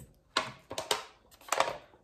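A few short, sharp clicks and brief rustles of something being handled, in small clusters across the two seconds.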